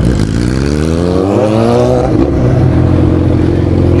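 Yamaha XJ6's inline-four engine revving up hard under acceleration, its pitch climbing for about two seconds, then dropping at a gear change and pulling on steadily.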